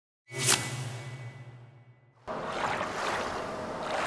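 A short whoosh with a low held tone that fades over about two seconds, like an intro sound effect. Then, abruptly, steady outdoor noise of wind and river water.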